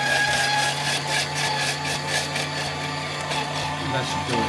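VEVOR 250 W electric cheese grater (salad shooter) running at its single speed, its motor humming steadily while the spinning shredder drum grates cucumber with a rasping scrape.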